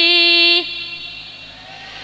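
A woman's voice singing one long, steady held note through a microphone and loudspeakers, cutting off about half a second in and leaving a much quieter background.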